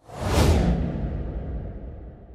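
Transition sound effect: a whoosh with a deep low rumble, swelling in over about half a second and then slowly fading away.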